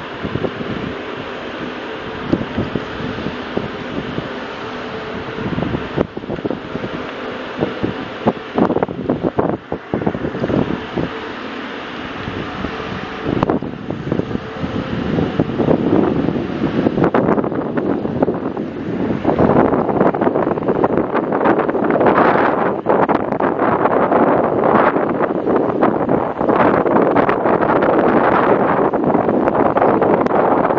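Wind buffeting the microphone, growing louder and gustier about two-thirds of the way in, over a faint steady hum in the first part.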